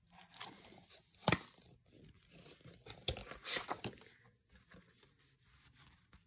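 Plastic DVD case handled and turned over in the hands: rustling and crinkling with sharp plastic clicks, the sharpest about a second in and a cluster of them a couple of seconds later.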